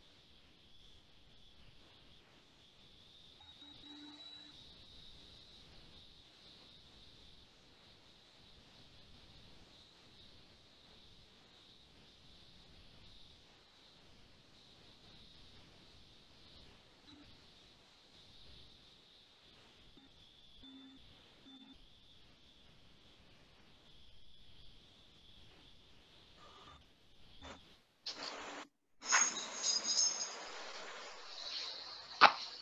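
Faint steady high hiss of a quiet video-call audio feed, then near the end a sudden loud burst of noise from a participant's open microphone.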